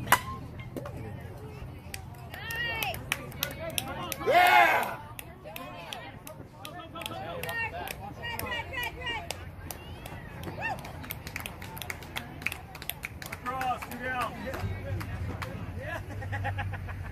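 Softball bat striking the ball with one sharp crack, followed by players shouting and yelling across the field, with one long loud yell about four and a half seconds in.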